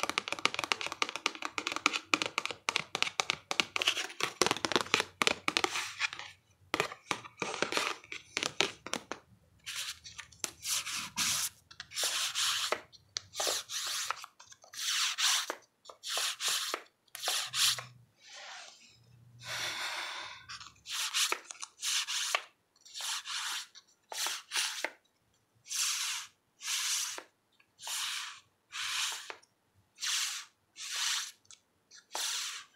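Fingers flicking through the stiff paper cards standing in a cardboard card box: a dense run of quick clicks and flutters, then, from about a third of the way in, slower separate swishes about once a second, each about half a second long, as the fingers brush over the card edges.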